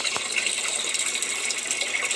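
Water pouring steadily from a PVC outlet pipe and splashing into a blue plastic barrel of a small aquaponics system.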